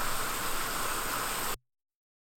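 Small waterfall on a rocky creek rushing with a steady hiss, cut off suddenly about one and a half seconds in.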